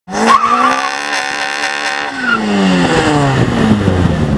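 Car engine running hard with a brief high tyre squeal near the start, then the engine note falls steadily over the last two seconds as the car slows.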